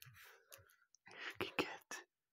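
A person whispering quietly, with a few sharp clicks, the loudest sounds, about one and a half seconds in.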